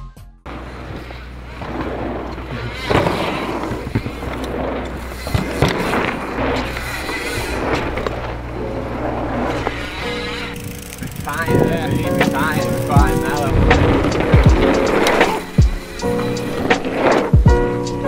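Mountain bike tyres rolling and whooshing over packed-dirt jumps, in repeated swells. Music comes in about ten seconds in.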